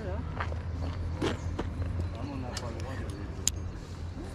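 Indistinct voices talking over a steady low rumble, with a few sharp clicks; the loudest click comes about three and a half seconds in.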